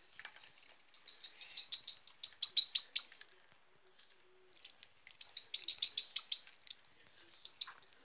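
Fledgling goldfinch giving rapid series of high chirps in two bursts, about a second in and again around five seconds in, with a short call near the end: the begging calls of a hand-reared young bird at feeding time.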